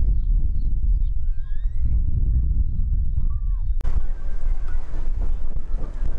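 Wind buffeting the camera microphone, a heavy steady low rumble, with a sharp click just before four seconds in.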